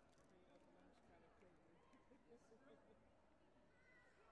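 Near silence: faint murmur of distant voices in a large sports hall, several people talking at once.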